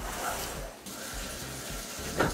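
Shower running: a steady hiss of water spraying, loudest in the first second, over soft background music.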